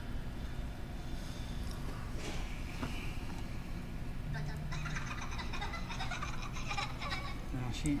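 Quiet, indistinct talking over a low, steady hum; there is no distinct sound from the tools.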